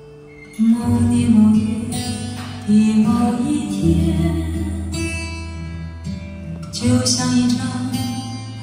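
A song with guitar and heavy bass played loudly through a home karaoke system's column speakers and subwoofer, as a listening demonstration of the system's sound; the music comes in about half a second in.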